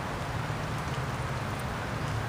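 Steady rain falling, an even hiss of drops, with a low steady hum underneath.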